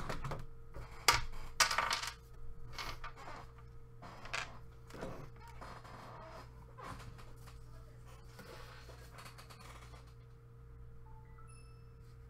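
Sharp clicks and knocks, as of small hard objects being handled, loudest about one and two seconds in and dying away after about five seconds. Near the end comes a short chime of several quick high tones.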